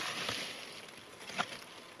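Rustling in leaves and undergrowth as a person leans down to the forest floor, fading out after about half a second, then a single sharp click about a second and a half in.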